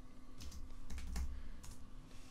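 A few separate key presses on a computer keyboard while a folder name is typed, sharp clicks spaced irregularly a fraction of a second apart.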